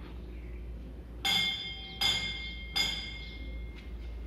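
A metal bell struck three times, about three-quarters of a second apart, each ring dying away.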